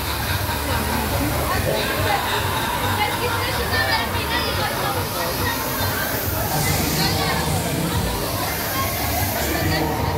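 Fairground ride sound system: a voice over the public address on top of music with a steady low beat. A hiss from the ride's fog jets comes in about two-thirds of the way through.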